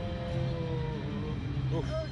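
A rider's long drawn-out vocal exclamation, held for about a second and falling slightly in pitch, then a short "oh" near the end. A steady low rumble runs underneath.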